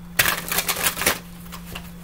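A deck of cards being shuffled by hand: a quick run of papery flicks for about a second, then a few softer flicks.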